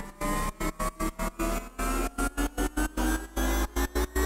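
An electronic riser rising steadily in pitch, chopped on and off in a fast stutter by square-wave volume automation on a Mixtool gain plugin, with a deep low end pulsing under it.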